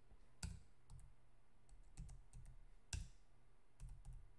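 Faint, irregular clicks of a computer keyboard and mouse, about six in all, as cell references and plus and minus signs are entered into a spreadsheet formula.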